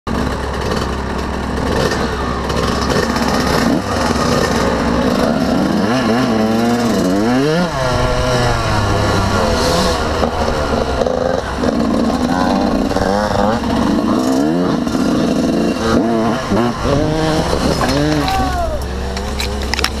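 Yamaha YZ125 two-stroke dirt bike engine, heard on board, revving up and down again and again as it is ridden through the gears. Near the end a shout and a short clatter as the bike crashes into the brush.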